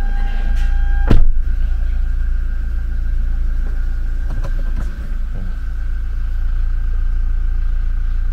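Toyota Fortuner's engine running with a steady low rumble, heard from inside the cabin. A single sharp, loud knock sounds about a second in.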